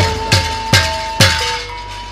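Live accompaniment of a sandiwara folk-theatre performance: three sharp metallic clashing strikes about half a second apart, each with a low drum-like thud under it, over a long held wind-instrument note.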